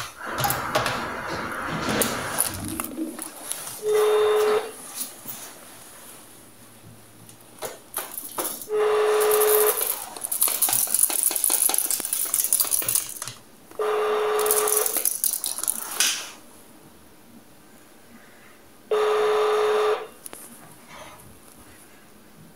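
Landline telephone ringback tone heard from the handset: four steady beeps, each about a second long and about five seconds apart, while the call rings unanswered. Rustling and handling of the handset come in between.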